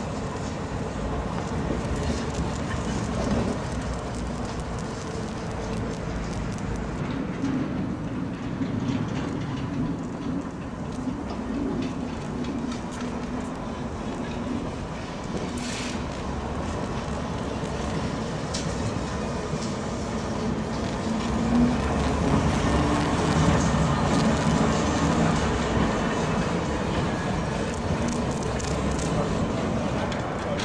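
Historic KSW tram railcar running slowly over depot trackwork: a steady rumble of wheels on the rails with a low hum, getting louder about two-thirds of the way through.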